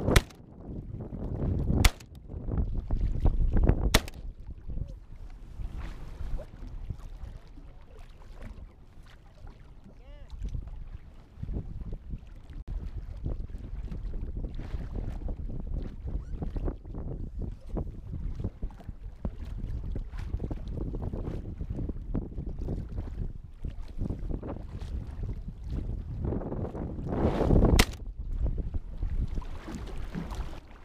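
Three shotgun shots about two seconds apart, then a fourth near the end, over steady wind rumbling on the microphone and waves against a layout boat.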